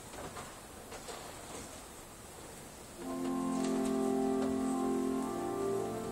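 Church organ starting to play about halfway through, sustaining steady held chords that shift once, after a few seconds of faint room noise with small clicks.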